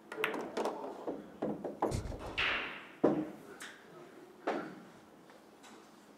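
Pool balls clacking during a shot on a pool table: the cue strikes the cue ball and balls click against each other and the cushions in a quick run of sharp clicks, with a dull thump and brief rattle about two seconds in. A few single clicks follow, each spaced about a second apart.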